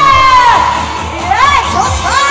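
Live trot medley: a woman singing into a microphone over a backing track with a steady beat, while an audience shouts and cheers along.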